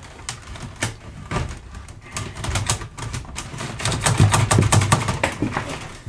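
Irregular clicking and scraping of electrical wire being pushed through PVC conduit, the wire snagging inside the pipe's bends. The clicks come thicker and louder about four seconds in.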